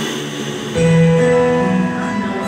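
Guitar music in a break between sung lines: a chord struck about three-quarters of a second in, left ringing and slowly fading.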